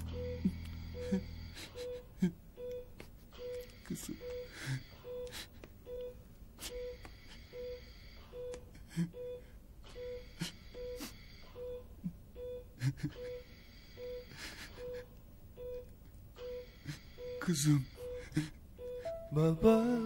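Hospital patient monitor beeping steadily, a short beep about every 0.8 s (a pulse of roughly 75 a minute), with breathing hiss from an oxygen mask. There are quiet whimpers and moans throughout, rising to a man sobbing near the end.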